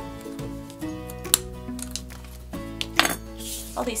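A hand-held metal single-hole paper punch clicks shut through layers of paper about a second in, then clinks as it is set down on the table about three seconds in. A brief brushing rustle follows near the end, with background music underneath.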